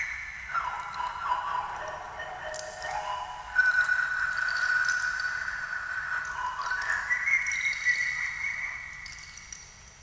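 Improvised object music: a high, wavering tone that slides down in pitch over the first few seconds, jumps up about halfway through and holds steady, then rises again and holds before fading away near the end.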